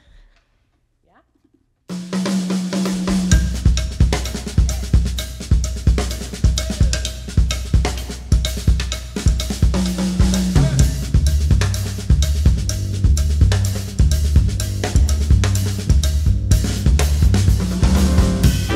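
After about two seconds of silence, a jazz drum kit and upright bass kick off a tune: a steady, even drum groove of snare, bass drum and cymbals over a repeating bass line.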